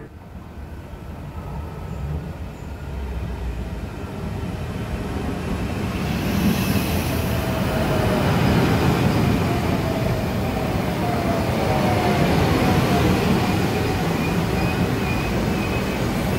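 Trenord double-deck electric commuter train pulling into the station: a rumble that builds over the first several seconds, then a whine falling in pitch as the train slows alongside the platform.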